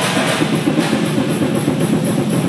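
Two drum kits played live together: fast, busy drumming on drums and cymbals, with cymbal crashes at the start and a little under a second in.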